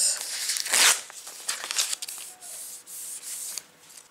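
Manila envelope's peel-and-seal strip being handled: a short tearing rasp of the backing strip being peeled off, loudest just before a second in, then softer paper rustling and rubbing as the envelope is worked.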